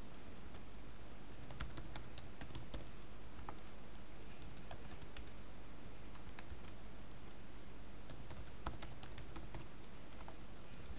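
Typing on a computer keyboard: runs of quick keystrokes with short pauses between them.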